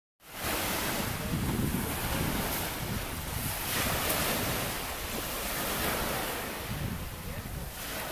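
Small sea waves breaking and washing onto a pebble beach, swelling and easing, with wind buffeting the microphone.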